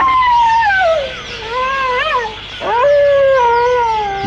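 A wild canid howling: a long wail that falls steadily in pitch, a short rising-and-falling call about two seconds in, then a second long howl that slowly falls.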